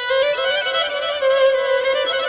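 Solo violin playing an ornamented melody in the Persian classical mode Shur, a single line that keeps returning to one held low note with short quick notes above it.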